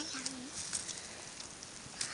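Footsteps and faint rustling on a pine-forest floor of moss, needles and twigs, with a brief low hummed voice sound at the start.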